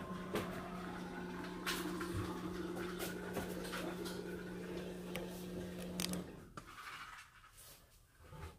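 A steady electrical hum from a household appliance, cutting off suddenly about six seconds in, with scattered light knocks and clicks over it.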